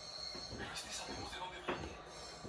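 Plastic stylus scratching faintly across the writing screen of a VTech Write and Learn Creative Center toy as a letter is traced, with a short click about 1.7 seconds in.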